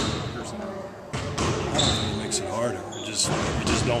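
Basketballs bouncing on a gym court: a few irregular sharp thuds, heard among voices.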